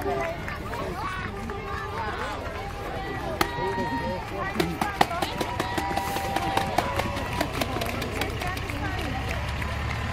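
Roadside crowd chattering and calling out, with scattered sharp claps in the middle, as a large DAF truck drives slowly past. Its diesel engine rumbles low underneath.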